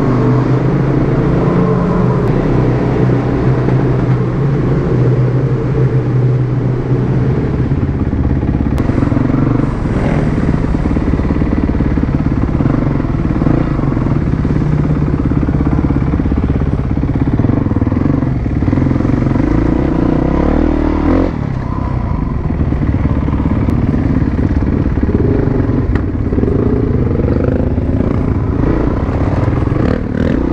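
Yamaha WR450F supermoto's single-cylinder four-stroke engine running under the rider as it is ridden, the engine note shifting with the throttle. It drops off briefly about two-thirds of the way through, then revs rise again near the end.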